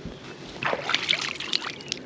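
Water splashing and sloshing at the side of a boat as a bass is released and swims off with a swing of its tail. The splashing comes in irregular bursts, starting about half a second in.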